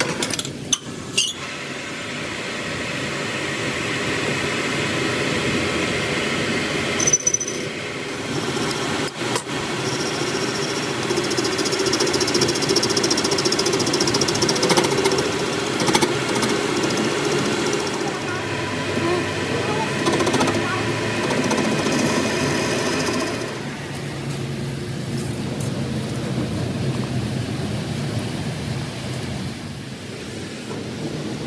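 Metal lathe running, its tool cutting inside the centre bore of a truck axle shaft flange held in a four-jaw chuck: a steady machine drone with a whine of gears. A few sharp clicks come just after the start, and the sound eases off about three-quarters of the way through.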